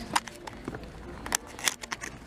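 Box of chalk sticks being handled and opened, with several sharp clicks and taps as the sticks are checked for breakage.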